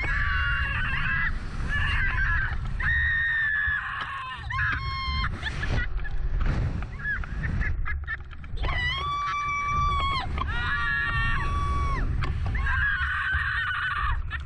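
Two riders screaming and laughing as a reverse-bungee slingshot ride flings them through the air, with several long, high screams. Rushing wind rumbles on the ride-mounted camera's microphone underneath.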